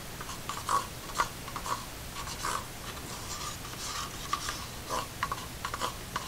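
Soft, irregular scraping and light taps of a wooden stir stick against a small plastic cup as acrylic paint is scraped off the stick into it.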